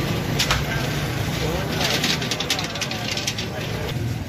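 Busy street-food stall ambience: background voices over a steady traffic hum, with a sharp click about half a second in and a run of clinks and clatters about two seconds in.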